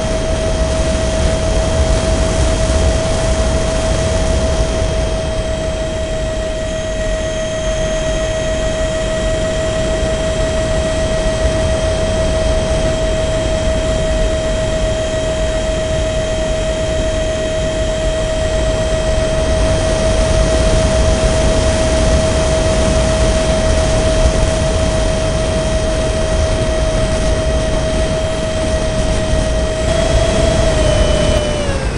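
Radio-controlled Su-34 model jet's engine heard from a camera riding on the airframe: a steady high whine at constant pitch over heavy rushing wind and low rumble.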